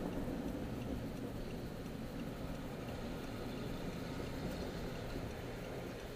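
Steady road and engine rumble heard from inside a moving car's cabin, with a faint low hum, growing a little quieter toward the end.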